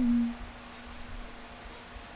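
A steady low pure tone, loud for about the first third of a second, then faint.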